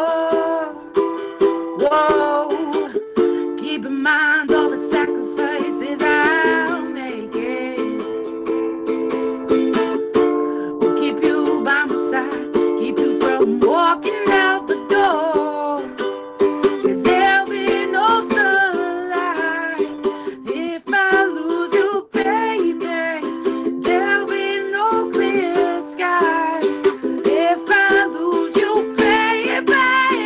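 A ukulele strummed in steady chords, with a woman singing a wavering melody over it.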